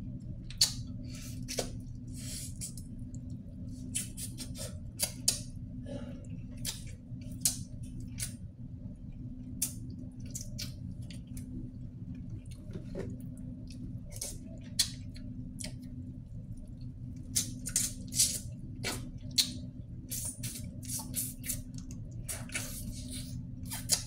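Close-up eating sounds: a metal spoon clicking and scraping in a plastic rice container, fingers picking apart a vinegar-stewed tuna head, and chewing. They come as scattered short clicks, bunched together in the second half, over a steady low hum.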